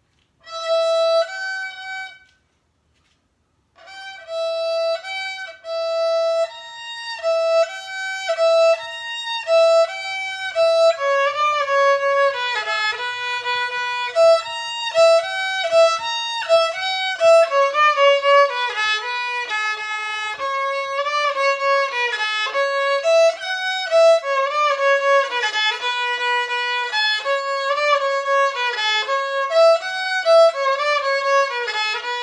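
Unaccompanied solo violin: one bowed note, a silence of about a second and a half, then a continuous melody of bowed notes moving up and down.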